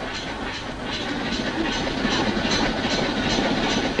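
Train running along the rails, its wheels clattering in an even rhythm over the rail joints, getting a little louder over the span.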